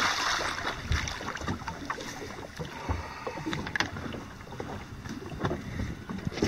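Water splashing as a hooked shark thrashes at the surface beside the boat, loudest at the very start, then a lower wash of water with scattered short knocks.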